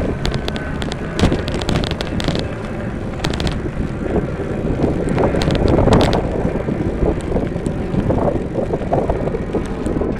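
Wind rumbling on the microphone of a camera carried on a moving bicycle, with scattered clicks and rattles. The noise swells to its loudest about six seconds in.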